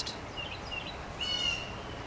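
A bird calling: a few short, faint chirps, then a clearer high call about a second in, over a steady background hiss.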